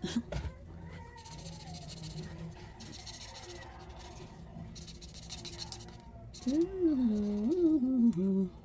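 Felt-tip marker scratching across paper in a few short colouring strokes. Near the end a drawn-out vocal sound, wavering up and down in pitch, is the loudest thing.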